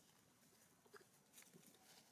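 Near silence, with faint crackling and clicking of dry leaf litter as macaques move over it, a few soft crackles between about one and two seconds in.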